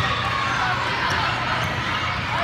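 Indoor volleyball rally in a large hall: overlapping, echoing voices of players and spectators, with short squeaks of sneakers on the court floor.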